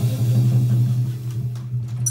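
Saxophone holding one low note, a steady drone, with a few faint taps from the drum kit.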